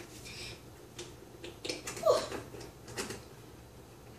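A child sipping cold water from a glass, with small clicks and swallowing sounds, then letting out a loud breathy "whew" about two seconds in.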